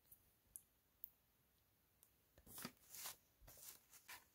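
Mostly very quiet, with a few faint ticks in the first second, then from about halfway a run of short rustles of paper as a spiral sketchbook is handled.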